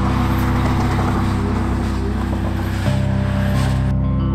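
A car being driven hard, its engine and tyre noise mixed under music with sustained low chords. The car noise cuts off suddenly near the end.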